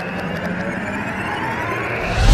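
Synthetic intro sound effect: a whooshing swell with a faint pitch rising through it, building toward the logo reveal.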